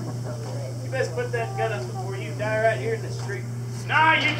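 Indistinct speech starting about a second in, over a steady low hum that runs throughout.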